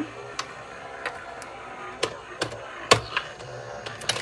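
Scattered sharp clicks and taps, about six, as a metal cutting die and plastic cutting plates are handled and set up at the die-cutting machine, over a faint steady hum.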